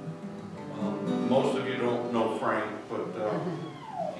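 Acoustic guitar played softly, chords ringing, with a man's voice coming in over it from about a second in.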